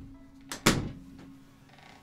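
Two quick sharp knocks about half a second in, the second louder, over a faint low steady hum.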